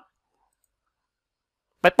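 Near silence in a pause of a man's narration, with his voice starting again near the end.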